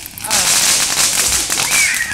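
Ground fountain firework spraying sparks: a loud, steady hiss with fine crackle that starts about a third of a second in.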